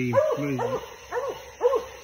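Redbone coonhound barking at a tree where it has a raccoon treed: short chop barks, about two a second.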